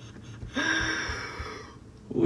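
A man's breathy, voiced gasp while laughing, about a second long, starting about half a second in.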